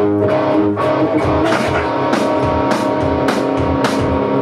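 A rock band playing together: strummed electric guitar and bass over a steady beat from an electronic drum kit.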